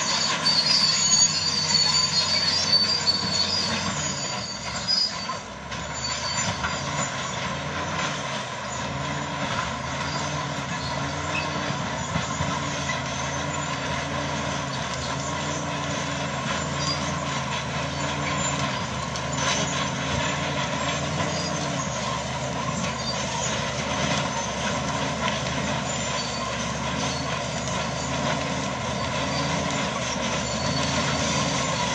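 Crawler bulldozer working under load as it clears brush: a steady, loud diesel drone whose low note rises and falls about once a second, with a high squeal from the tracks in the first few seconds.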